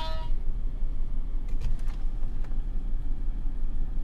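Steady low rumble of a car idling, heard from inside the cabin, with a short electronic beep at the very start and a few faint clicks in the middle.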